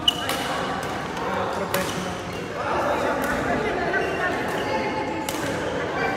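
Badminton rackets striking a shuttlecock during a doubles rally: several sharp hits, the loudest right at the start, with more about two seconds in and near the end, in a large hall over background chatter.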